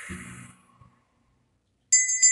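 A long breath blown out trails away, then near the end a brass hand bell is struck and rings out with a clear, high, sustained ring that starts suddenly.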